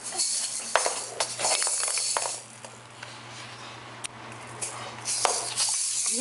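A baby shaking a pair of egg-shaped maracas: bursts of rattling hiss with a few sharp clicks, quieter in the middle, then shaken again near the end.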